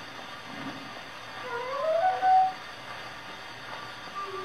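A shellac 78 rpm opera record playing on an acoustic gramophone: after a loud brass passage, a quiet stretch where one soft melodic line rises over the record's steady surface hiss, with a short louder note about halfway through.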